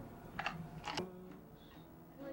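Acoustic guitar between songs: two sharp clicks about half a second apart, the second leaving a note ringing briefly before the strings fall quiet.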